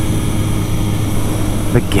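Suzuki GSX-S750 inline-four motorcycle engine running at a steady speed under way, with wind noise over the microphone.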